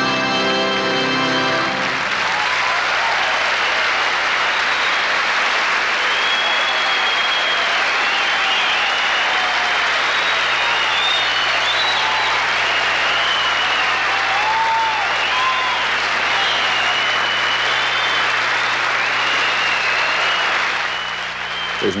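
A sustained final organ chord from the Rodgers touring organ stops about two seconds in. A large concert audience then breaks into loud, steady applause with whistles and cheers, which dies down near the end.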